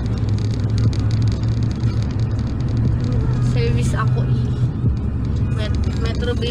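A car's engine and road noise heard from inside the cabin while driving: a steady low hum that eases slightly near the end.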